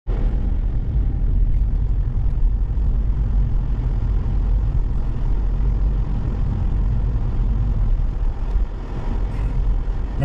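Steady low rumble of a moving car heard from inside its cabin: road and engine noise while driving at low speed.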